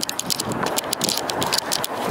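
Rapid light jingling and rattling of small metal pieces over rustling handling noise from a jostled handheld camera.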